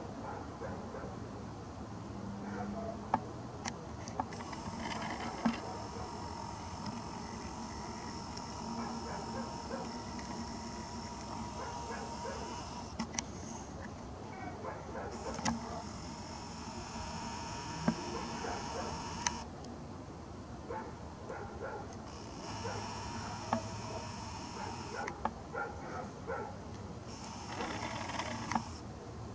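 A camera lens motor whining in four stretches of a few seconds each, every stretch starting and stopping abruptly, with scattered small clicks in between.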